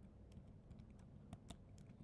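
Faint typing on a computer keyboard: about ten quick, irregular keystroke clicks as letters are entered.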